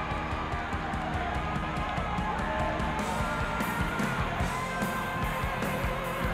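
Rock music with electric guitar over a steady drum beat.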